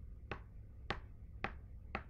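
Back end of a paintbrush handle tapping dots of acrylic paint onto a wooden cutout: four light taps about half a second apart.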